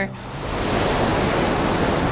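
Ocean surf: a steady rush of breaking waves, swelling up over the first half-second.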